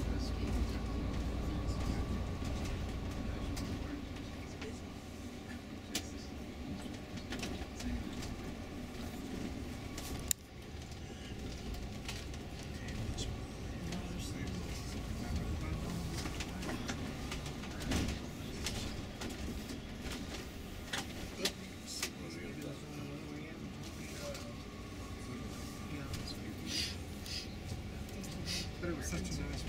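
Steady low engine and road rumble from inside a moving tour coach, with a few sharp knocks and rattles from the cabin. Indistinct voices murmur underneath.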